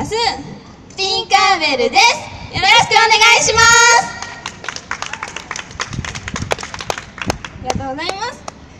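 Two young female idol singers hold the closing sung notes of a pop song over a backing track, cutting off sharply about four seconds in. Scattered clapping from a small audience follows.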